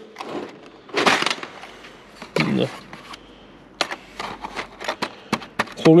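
A parts-cabinet drawer sliding open, then a quick run of small metallic clicks as loose steel circlips (shaft retaining rings) are handled in their tray during the last two seconds.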